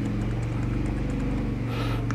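A steady low motor hum, like an engine running, with faint taps of a computer keyboard over it.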